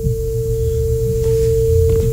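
A steady, unbroken electronic tone at one mid pitch, a phone line tone heard over the studio microphones, with a low hum beneath it.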